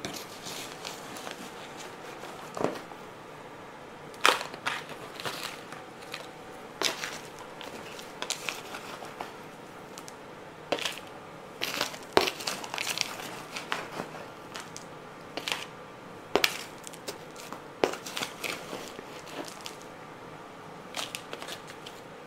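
A metal hand scoop digging into a plastic tub of dry, gritty potting mix: irregular crunching scrapes as soil is scooped and tipped into a plastic container, a few strokes louder than the rest.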